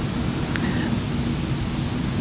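Steady hiss of background room noise, with a faint low hum and a single faint short tick about half a second in.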